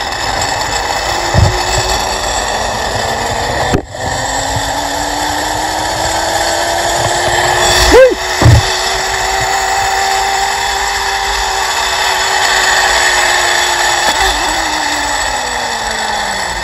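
Zip-line trolley pulleys running along the cable: a steady whirring hum that rises slowly in pitch as the rider picks up speed and drops again near the end as he slows, over wind rushing past the microphone. A couple of short knocks come about halfway through.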